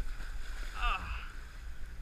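Steady low rumble of wind and water around a small fishing boat at sea, with one short voiced call about a second in.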